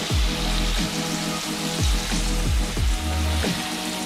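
Olive oil sizzling steadily in a frying pan as monkfish sautés with tomatoes, olives and capers, over background music with a steady bass beat.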